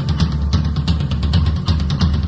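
Heavy metal band's 1995 demo tape recording: a drum kit playing rapid, evenly spaced hits over a heavy bass, with no vocals.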